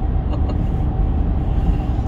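Steady engine and tyre rumble of a car driving on an asphalt road, heard from inside the cabin as a low drone with a faint steady hum above it.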